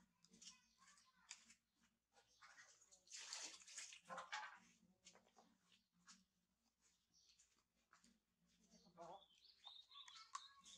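Faint clicks and rustling from a baby macaque handling small green fruit, with a louder rustle about three to four seconds in.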